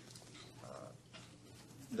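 A man's faint, brief hesitation sound, "uh", in the middle of speaking, over quiet conference-room background.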